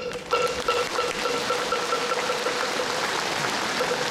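A large audience applauding, with a steady tone held beneath the clapping.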